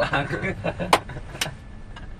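Several young men laughing inside a moving car, the laughter dying down after about half a second, over the low steady rumble of the vehicle. Two sharp clicks come about a second in and again half a second later.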